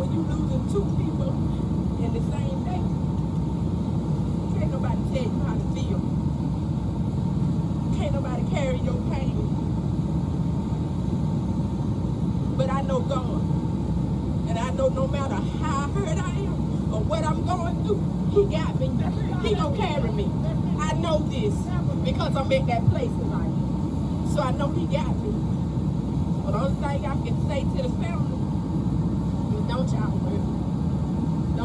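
A steady low rumble throughout, with a faint, indistinct voice coming through a loudspeaker, most present through the middle stretch.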